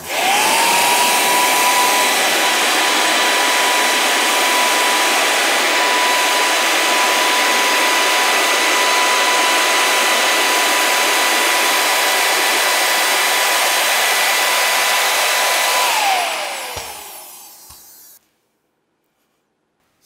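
Handheld leaf blower switched on, its motor spinning up to a steady high whine over a loud rush of air. It runs for about sixteen seconds, then is switched off and winds down with a falling whine.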